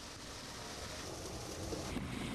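Steady rush of water pouring out of a car that has been filled with water and is leaking.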